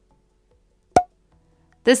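A single short, sharp wood-block knock about halfway through, otherwise silent; a woman's narrating voice begins just at the end.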